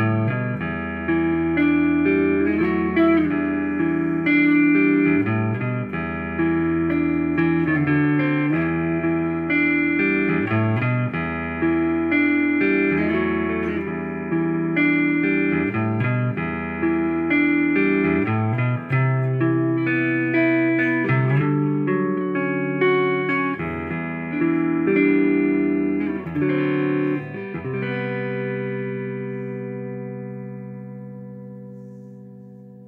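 Squier Affinity Jazzmaster electric guitar played on its neck pickup: a picked chord progression with the notes ringing into each other, on a guitar freshly set up with its intonation adjusted. Near the end a last chord is left to ring out and fades.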